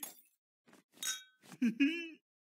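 Glasses clinking together once about a second in, in a toast, with a short ringing tone after the strike. Cartoon character voices grunt and laugh just before and after it.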